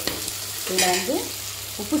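Garlic, onion and tomato sizzling in hot oil in an earthen pot, with a steady frying hiss, while a spatula stirs and scrapes them.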